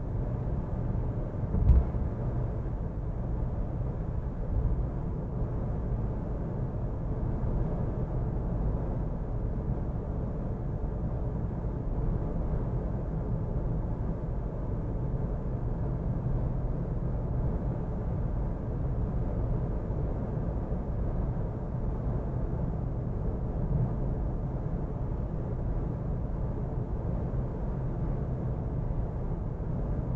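Steady low rumble of tyre and road noise from a car driving at highway speed, heard from inside the cabin, with one sharp knock a little under two seconds in.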